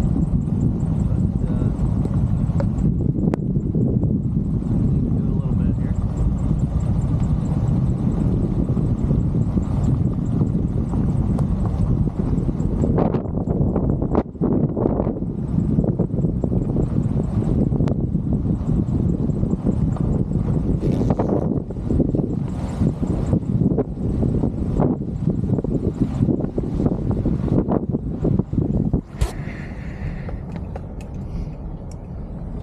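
Wind buffeting the camera microphone in irregular gusts over the steady low rumble of a truck driving slowly.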